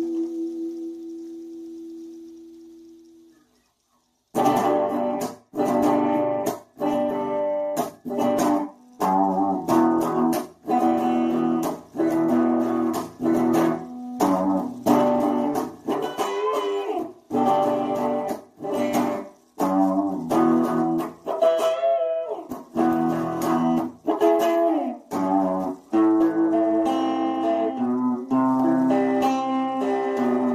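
Solo electric guitar. A held chord dies away over the first few seconds, and after a brief silence the guitar comes back in with short, rhythmic chords broken by pauses, with a bent note about two-thirds of the way through.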